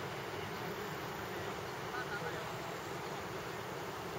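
Steady background noise with no distinct event.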